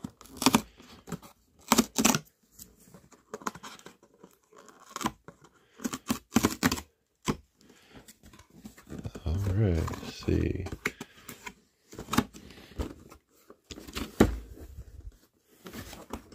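Cardboard toy box being pried open by hand: sharp tearing and crackling as the glued flap tabs pull apart, in several separate bursts with cardboard handling rustle between them.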